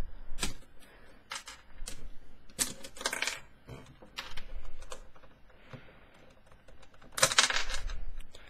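Plastic pieces of a Dayan Megaminx clicking and knocking irregularly as the puzzle is pried apart by hand and pieces are set down on a table, with a denser flurry of clicks about three seconds in and again near the end.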